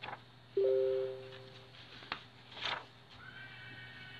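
A short ringing tone of two pitches sounding together. It starts suddenly about half a second in and fades out over about a second. A few faint clicks and rustles come before and after it.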